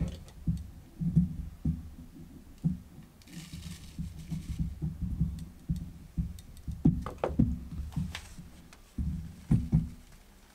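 Irregular low thumps and knocks of coffee gear being handled on a wooden counter, with a short rustle about three seconds in and a few sharper clicks near the seven- to eight-second mark.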